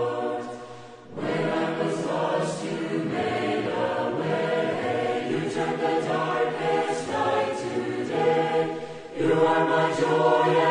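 A choir singing as the closing music; it fades away just under a second in and comes back strongly, with another short dip near the end.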